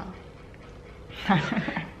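A short human laugh, starting a little over a second in after a quiet stretch.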